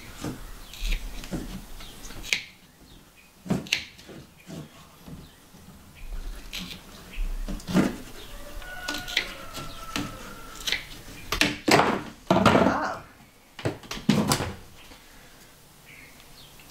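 Intermittent handling noises from a corrugated plastic hose being worked onto a tank fitting by hand: scattered clicks and knocks, a faint squeak near the middle, and a longer burst of scraping and rubbing a few seconds before the end.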